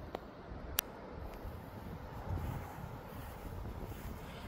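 Quiet outdoor background: a low rumble of light wind on the microphone, with a sharp click a little under a second in.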